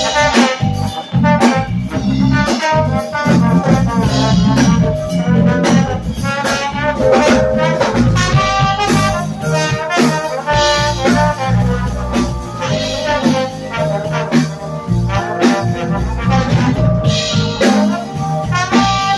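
A live band playing: a trombone plays a moving melodic line over electric guitar, bass and a drum kit.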